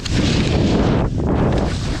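Wind buffeting a GoPro's microphone during a fast ski descent: a loud, continuous rumbling rush mixed with the hiss of skis sliding over snow, easing briefly about a second in.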